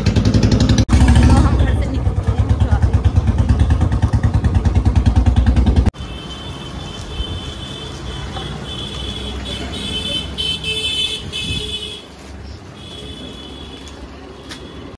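Royal Enfield Bullet's single-cylinder engine running at idle, with a loud, even, rapid thump of about six beats a second. The engine sound cuts off abruptly about six seconds in, leaving quieter background noise.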